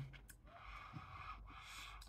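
Near silence: faint room tone with a soft breath.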